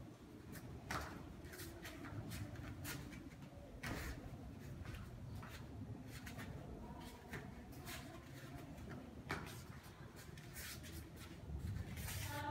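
Faint, scattered thumps and rustles of a child's bare feet stepping on foam mats and a taekwondo uniform swishing as she performs a form, with a few sharper short sounds spaced seconds apart.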